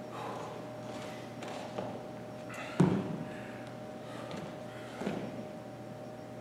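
Sneakers thudding on a hardwood gym floor as a person steps out into lunges. One sharp, loudest thud comes about three seconds in, with lighter knocks a second before and about two seconds after, over a faint steady hum.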